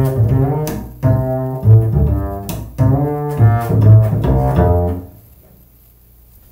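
Upright double bass played pizzicato in a jazz style: a run of fingered, plucked notes with a deep, warm low end. The line stops about five seconds in, the last note dying away.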